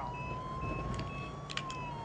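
Ambulance siren in a slow wail, its pitch climbing gently and then starting to fall about three-quarters of the way through, over a low vehicle rumble. A short high beep repeats about twice a second.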